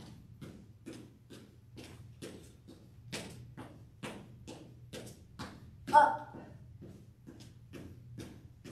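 Sneakered footsteps on a hardwood floor from walking in place, an even tapping of about three steps a second, over a low steady hum. About six seconds in there is one brief, louder sound with a pitch.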